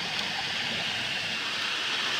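Steady rush of water from a high-pressure sewer jetter (4,000 PSI, 18 gallons a minute) flowing through a clear jetter-tool body on a cast iron sewer cleanout, flushing out chunks of scale as the jetter head is drawn back.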